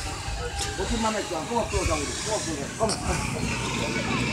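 A pig on a rope grunting repeatedly, a string of short grunts a few per second.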